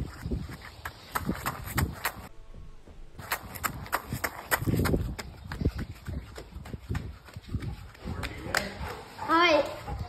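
Footsteps with irregular crunching and rustling, someone walking over rough ground, and a brief voice near the end.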